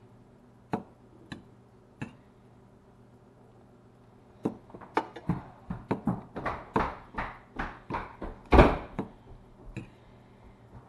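Metal fork tapping and scraping against a ceramic nonstick frying pan as pieces of fish are turned over: a few separate clicks in the first two seconds, then a busy run of clinks and scrapes from about halfway through, the loudest one near the end.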